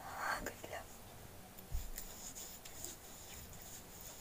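A woman's brief whisper right at the start, then a soft low thump and faint tapping and rustling of hands handling small things close to the microphone.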